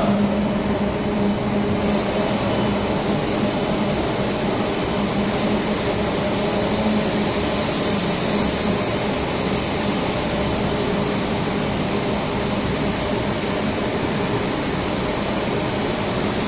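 Continuous machinery noise of an electro-galvanizing wire production line at work: a steady low hum under an even rushing noise, with no pauses or sudden knocks.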